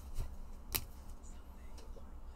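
Trading cards and a rigid plastic card holder being handled, giving two sharp clicks, the second a little under a second in, with a faint third tick near the end, over a low steady electrical hum.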